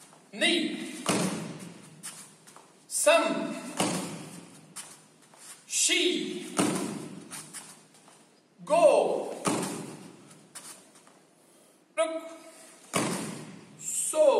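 Dull thumps from bare feet landing on a foam mat, each ringing briefly in the hall, about every three seconds. They come as a karateka hops forward into each backfist strike. Between the thumps, a man's voice gives short shouted counts.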